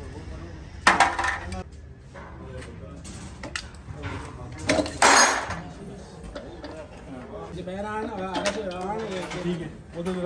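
Hand tools clinking and clattering against metal, in many short sharp clicks, with two louder clatters about a second in and around five seconds in. Men talk in the background.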